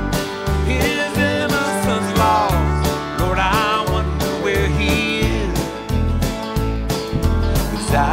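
Live country song: a man singing over his strummed acoustic guitar and a backing band, with steady bass notes underneath.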